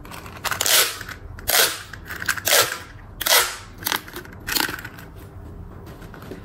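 Plastic pop tubes, the corrugated stretch-tube arms of a toy, being pulled out and pushed back, each stretch giving a short crackling rattle as the ribs snap open. Six such stretches come about a second apart.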